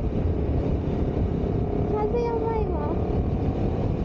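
Strong wind buffeting the microphone while a Honda CBR250RR motorcycle is ridden at a steady speed, with the engine running underneath the wind noise. The rumble is heavy and continuous, from the gusty crosswind on a high bridge.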